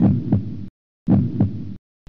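Heartbeat sound effect: two beats, each a lub-dub pair of dull thumps, about one beat a second, with dead silence between them.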